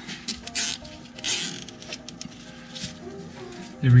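Gloved hands working rubber vacuum hoses into place around an engine bay: a few short rustling scrapes in the first two seconds, over faint background music.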